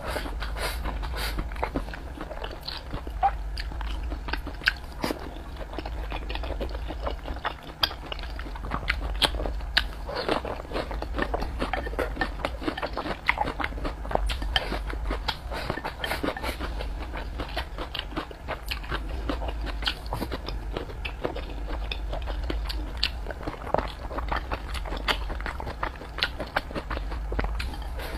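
Close-miked eating: a person chewing mouthfuls of rice and pork belly, with many short, irregular clicks and crunches.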